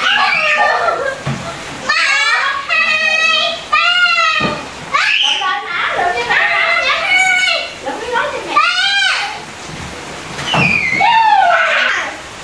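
Young children's voices shouting and squealing excitedly in play, high-pitched calls that rise and fall in runs with short pauses between.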